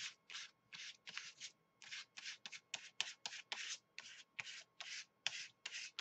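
A foam sponge rubbed quickly back and forth over paper and layered tissue, working in paint in short strokes, about three a second.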